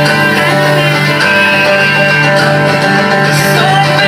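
Live country-bluegrass band playing: two strummed acoustic guitars with a fiddle carrying a melody over them.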